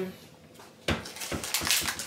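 Kitchen dishes and utensils clattering on a counter: a sharp knock about a second in, then several lighter clinks.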